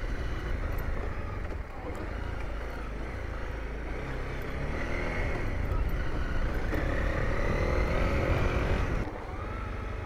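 Honda CRF250L single-cylinder engine running while riding, with wind rumble on the microphone. The engine note rises over the middle of the stretch, then falls off about nine seconds in as the bike slows.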